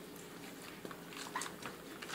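Faint small splashes and wet squelches of hands moving water over a vinyl doll in a small plastic basin, a few soft ticks scattered through the middle.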